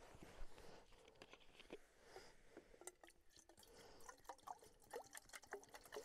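Faint water pouring from a plastic bottle into a small metal cook pot, with light scattered clicks of handling.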